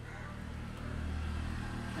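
Steady low background hum, the kind of constant room or electrical hum that runs under the whole recording.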